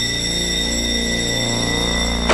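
Air-alert alarm sounding the readiness signal: a loud, steady high-pitched electronic tone over a low hum, unchanging throughout.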